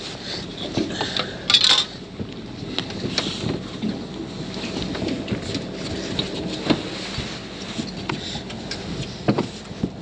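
Handling noises from a mulloway being moved and laid on a fibreglass boat deck: scattered knocks, clinks and scrapes, with a louder rustling scrape about one and a half seconds in, over steady wind noise on the microphone.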